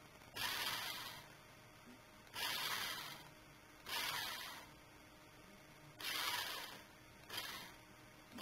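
Toy RC car's small electric drive motors and gearbox whirring in five short bursts of about a second each as the wheels spin, driven from the car's remote control.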